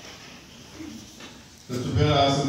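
Quiet hall room tone, then near the end a man's voice starts loudly over the lectern microphone's PA.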